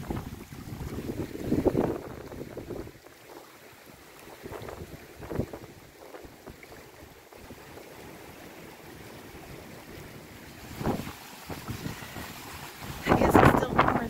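Strong gusty wind buffeting the microphone, with small waves lapping at a pebble shore underneath. The wind comes and goes, with loud gusts about a second in, near the eleventh second and loudest just before the end.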